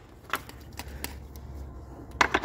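A few light clicks and taps as the blue fitting on a braided oil-bypass hose is handled and threaded in by hand, over a low steady hum.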